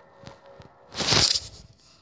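Handling noise from a handheld phone being carried and moved about: faint clicks, then one loud rustle about a second in.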